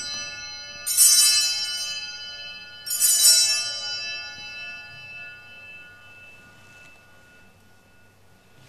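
Altar bell rung at the elevation of the chalice during the consecration. There are two strikes, about a second in and about three seconds in, and each rings on and fades away slowly. The end of an earlier strike is still ringing at the start.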